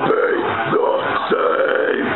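A man's harsh, guttural growled vocals in short phrases, over a heavy metal backing track of guitars and drums.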